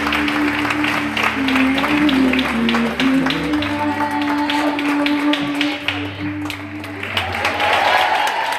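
Audience applause over the closing instrumental music of a song: slow held notes over a low bass line. The clapping thins out about six seconds in.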